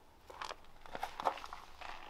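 Soft footsteps crunching on gravel, a run of irregular steps.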